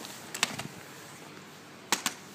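Two short clusters of sharp knocks, one about half a second in and another near the end, over a low steady background hiss.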